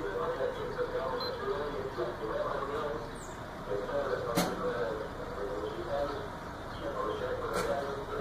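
Indistinct background voices talking throughout, with a sharp click about four seconds in and a fainter one near the end.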